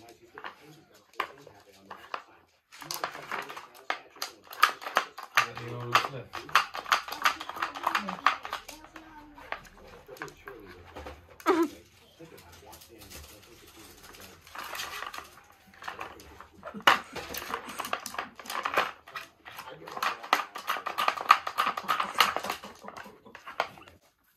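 Plastic dog treat puzzle being worked by a small dog: rapid clattering and rattling of the plastic layers and treats, in two long spells with a quieter gap between.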